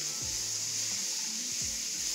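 Sliced button mushrooms sizzling steadily in a nonstick pan as a silicone spatula stirs them.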